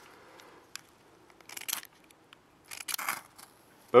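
A Swedish fire steel (ferrocerium rod) being scraped to throw sparks onto the fire-starter's fuel. There are two short rasping strikes about a second apart, and the fuel is alight by the end.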